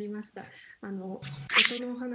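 A woman speaking hesitantly, short halting syllables with small mouth clicks between them.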